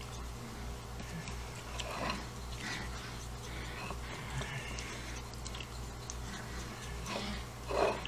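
Metal palette knife stirring and smearing thick wet watercolour paint on a glass plate: soft, irregular squishy scrapes, over a low steady hum.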